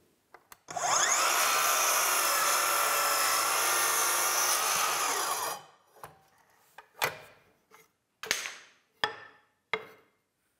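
Festool cordless mitre saw spinning up and cutting through a wooden strip at a steep angle, a steady whine with the blade in the wood for about five seconds before it stops, no dust extractor running with it. A few short knocks follow.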